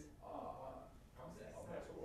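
Faint speech, far quieter than the test talk around it, in two short stretches.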